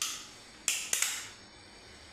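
Sharp, hissy clicks: one at the start, then three in quick succession just under a second later, each fading over a fraction of a second.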